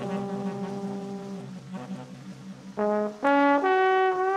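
Trombone and tenor saxophone playing together: a low note pulsing rapidly under a held higher note, then louder sustained notes come in near the end.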